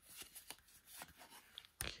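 Faint rustling and crackling of a folded paper pamphlet being handled and opened, in short irregular bursts.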